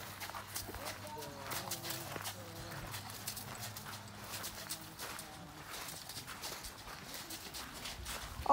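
A horse walking on a dirt track, its hooves giving irregular soft steps, mixed with the footsteps of people walking alongside.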